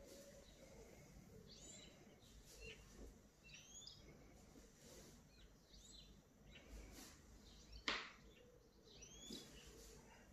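Near silence with faint bird chirps every couple of seconds, and a single sharp knock about eight seconds in.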